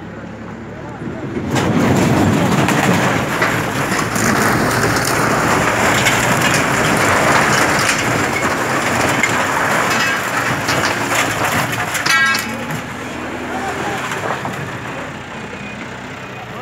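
A backhoe loader tearing down a makeshift stall: a long crashing and crunching of collapsing sheet metal, wood and debris that starts about a second and a half in and eases off near the end.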